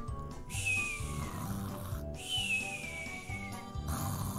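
Cartoon snoring sound effect: two long whistles, each falling in pitch with a hiss of breath, as the sleeper breathes out, over background music.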